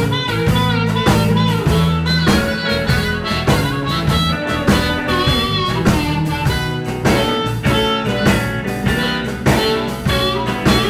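Live blues band playing: an amplified harmonica plays bent notes into a microphone over electric bass, electric guitar and a drum kit keeping a steady beat.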